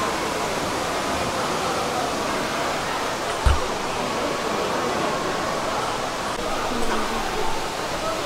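Steady rushing of falling water and spray, a continuous hiss, with a faint murmur of people's voices underneath. A single low thump sounds about three and a half seconds in.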